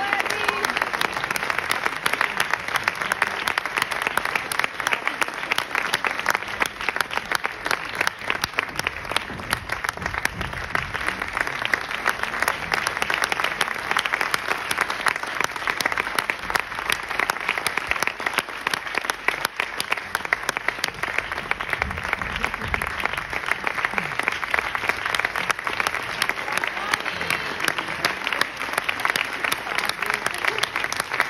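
Theatre audience applauding, a dense, even clapping that holds steady.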